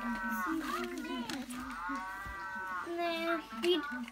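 A person's voice making several long, drawn-out vowel sounds, each about a second, rising and falling in pitch, rather than clear words.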